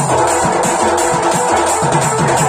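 Folk dance music: a large barrel drum (dhol) played with a stick in a fast, even beat of deep strokes that drop in pitch, under steady held melody notes.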